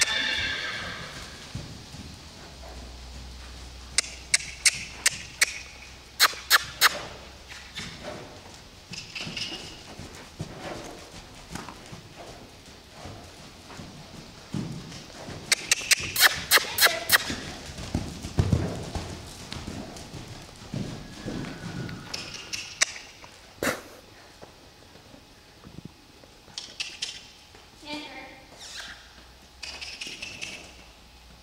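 A loose horse moving about a sand arena: runs of quick, sharp hoofbeats about four to seven seconds in and again around sixteen seconds, with the horse neighing several times, once right at the start and again near the end.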